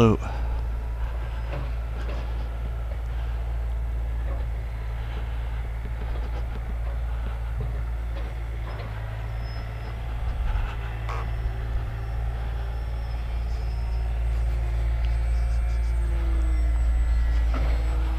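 An electric RC plane's brushless motor and propeller (a SunnySky X2212 1400kv with an 8x4 prop) whining faintly in flight overhead, its pitch shifting near the end as the throttle and distance change. This sits over a steady low rumble.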